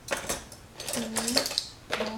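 Clinks and knocks of dishes and small objects being moved about on a tabletop during tidying, one light clink ringing briefly past the middle.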